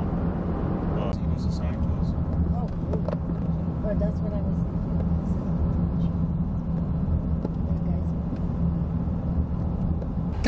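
Steady road and engine noise inside a moving car's cabin: an even low hum with tyre noise.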